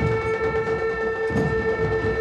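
Traditional Indian drum and wind ensemble playing: a wind drone holds one steady note while drums beat irregularly underneath.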